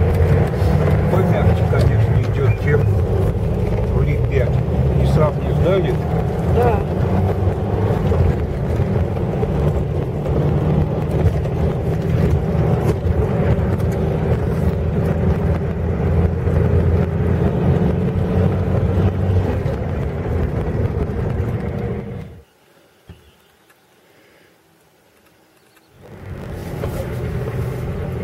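Cabin drive noise of a VAZ-2120 Nadezhda on a dirt track: a steady low engine and road drone with the hum of its Forward Professional 139 mud tyres, which the occupants find much quieter than the VLI-5 tyres it had before. About 22 seconds in the sound drops out almost to silence for about three seconds, then comes back.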